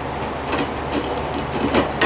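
T8 lamp tube being twisted and pulled out of its fixture sockets: a few short knocks and scrapes of the tube against the fixture, the loudest near the end, over a steady low electrical hum.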